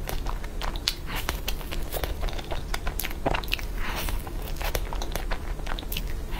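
Close-miked biting and chewing of a cream puff: many sharp, crackly mouth clicks as the pastry is bitten and chewed.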